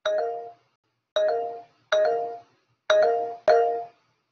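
Video-call notification chime sounding five times at uneven gaps, each a short bell-like tone that fades within about half a second: the alert of participants raising their hands in the meeting.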